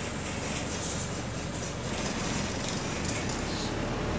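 Bus interior noise: the engine and running gear make a steady low rumble, with rattling from the body.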